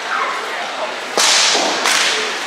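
Two sharp cracks about two-thirds of a second apart, the first the louder, each trailing a short hiss in the hall: rattan weapon blows striking a shield.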